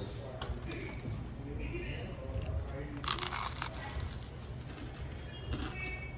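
A short crunch about three seconds in as crisp fried food is bitten and chewed, over a low room hum and faint background voices.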